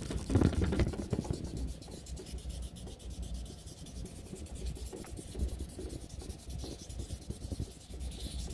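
Paper blending stump (tortillon) rubbed back and forth at an angle on a scrap of lined notebook paper, a continuous soft scratchy scrubbing, a little louder in the first second. The rubbing wipes leftover graphite off the stump's tip.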